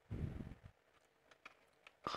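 Faint handling noise as fingers press down on the body of a Tomica diecast model car, a short soft rustle early on followed by a few light clicks; the metal-and-plastic toy has no suspension, so it does not give under the press.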